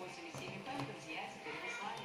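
Faint music mixed with voices in the background.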